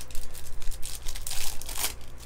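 Wrapper of a trading-card pack crinkling and tearing as it is handled and opened by hand: a fast run of crackles, busiest in the second half.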